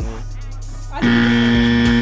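Background hip-hop beat, then about a second in a loud, flat, buzzy tone held for about a second and cut off sharply: an edited-in wrong-answer buzzer sound effect marking the answer as wrong.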